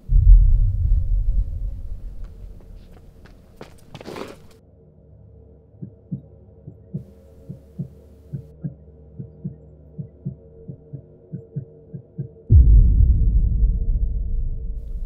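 Dramatic film sound design: a deep boom that fades over about two seconds, a brief whoosh about four seconds in, then a heartbeat effect of low thumps, about three a second, over a steady low drone. A second deep boom comes near the end.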